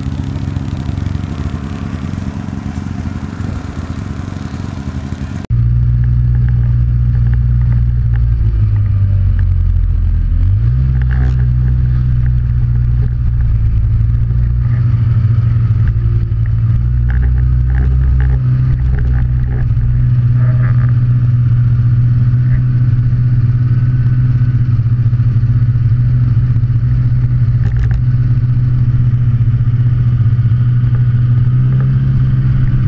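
Snowmobile engine running, heard from a camera mounted on the sled. About five seconds in, the sound cuts to a louder, steady engine drone. Its pitch dips briefly and climbs back around ten seconds in.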